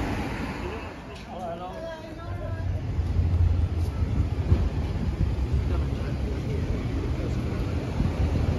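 Outdoor town-street background noise: a passer-by's voice briefly about a second in, then a low rumble that grows louder from about two and a half seconds in.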